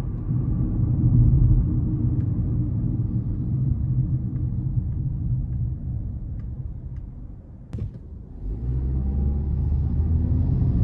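Engine and road rumble of a 2021 Kia Rio LX with its 1.6-litre non-turbo four-cylinder, heard from inside the cabin while driving. The sound dies down about seven seconds in, with a single sharp click, then the engine note picks up again as the car pulls through the turn.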